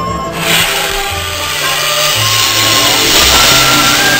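A fog machine hidden in a dragon lantern's mouth jets smoke: a loud, steady hiss that starts suddenly just after the start and carries on to the end, over background music.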